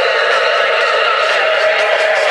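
Tech house DJ music playing loud over a nightclub sound system, recorded thin and tinny with almost no bass.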